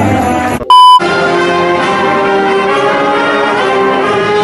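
A school concert band playing held chords with the brass to the fore, woodwinds underneath. It is broken near the start by a short, loud, high beep, after which the band music runs on steadily.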